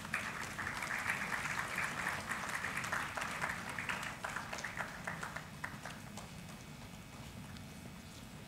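Audience clapping, strongest in the first few seconds and dying away toward the end.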